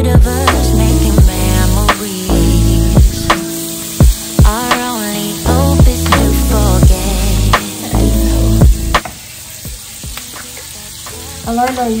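Music with a heavy beat and singing plays over a pan of spinach and onions sizzling as they sauté. The music stops about three-quarters of the way through, leaving the steady sizzle.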